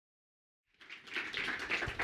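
Audience applauding, starting suddenly about a second in after silence.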